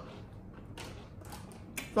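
A pause in the talk: quiet room tone with a few faint, short clicks.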